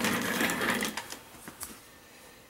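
A short, rapid mechanical buzz from a small motor for about the first second, which then fades to faint clicks.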